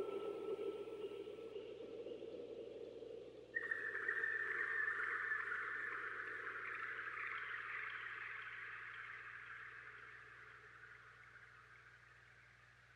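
The fading outro of an electronic psytrance track: a low synth sound dies away, then about three and a half seconds in a higher, hissy textured effect with a thin held tone starts suddenly and slowly fades toward silence.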